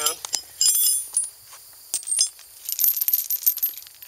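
Metal wrenches clinking and ringing against each other, then a steel trailer safety chain rattling as it is picked up near the end.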